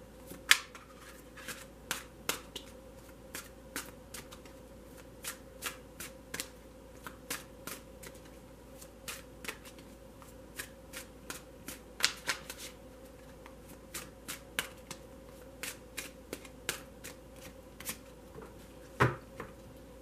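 A deck of oracle cards being shuffled by hand: soft, irregular card slaps and riffles about one or two a second. Near the end a louder knock as a card is set down on the table.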